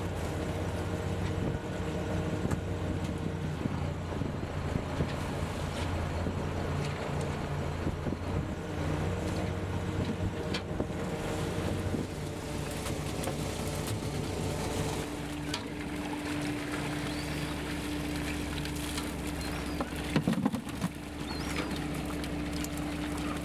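A commercial fishing boat's engine running steadily under wind and water noise, its note changing partway through. A few sharp knocks sound near the end.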